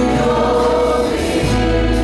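Live worship music: several voices singing together over a small church band of violin and acoustic and electric guitars, with sustained notes. A deep bass note comes in near the end.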